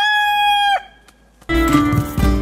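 A rooster crowing: the cock-a-doodle-doo ends on one long held note that stops just under a second in. Plucked guitar music starts about a second and a half in.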